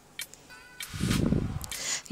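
A small click, then about a second of rushing hiss from a gas hob burner as its control knob is turned and the flame is adjusted.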